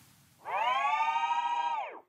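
Short transition sound effect: a single held electronic tone, rich in overtones, lasting about a second and a half, its pitch bending down as it cuts off.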